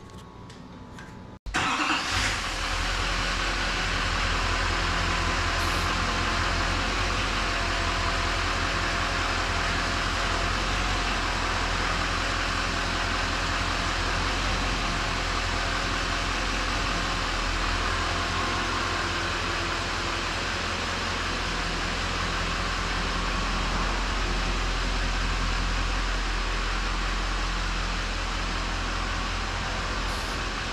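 Duramax diesel engine of a 2012 Chevy Silverado 2500 running steadily at idle from about two seconds in.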